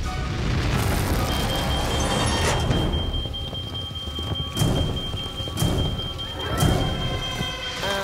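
Cartoon sound effect of a jet afterburner blasting flame along the bottom of a metal door and welding it shut: a dense rushing roar with a low rumble and several sharp cracks, with a thin steady high tone from about a second in.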